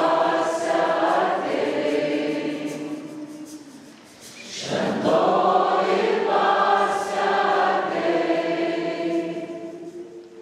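Congregation of men and women singing a slow worship song together in two long sung phrases, with a lull about four seconds in before the second phrase swells.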